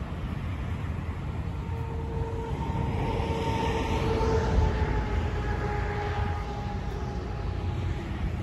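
Road traffic passing on a multi-lane road, with a low rumble of wind on the microphone; a passing vehicle's steady whine swells and peaks about halfway through.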